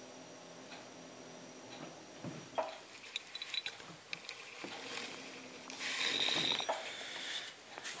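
Potter's wheel turning slowly, with light taps and clicks as a fingertip nudges a slipped beaker towards the centre of the wheel head. A louder rasping noise comes about six seconds in.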